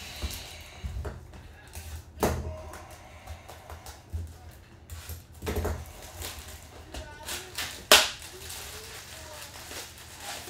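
Foil trading-card packs being handled on a table: crinkling and a few knocks as the stack is lifted and set down, the sharpest knock just before eight seconds in.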